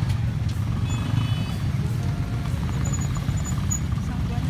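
Many motorcycle engines idling together in stopped traffic, a steady low rumble. A few short high beeps sound about a second in.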